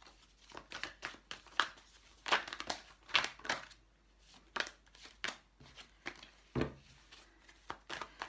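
A deck of tarot cards being shuffled by hand: quick, irregular papery flicks and crackles, with one dull thump a little past the middle.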